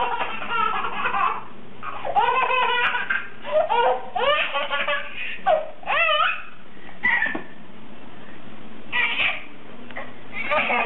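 Baby laughing at a dog in a string of high, rising-and-falling bursts, in several spells with short gaps, the last a brief one about nine seconds in.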